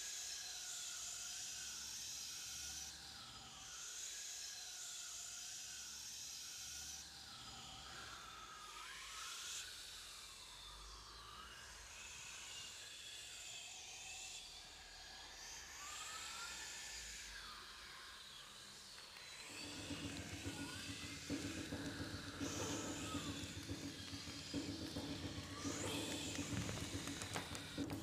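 Faint, eerie atmospheric sound bed: a hiss with wavering, whistle-like tones gliding up and down. About two-thirds of the way in, a low steady drone joins and the sound grows a little louder.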